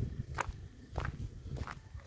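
Footsteps on a dirt path through undergrowth, about three steps at a walking pace.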